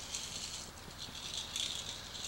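Soft, irregular rattling, in uneven patches, as something is handled.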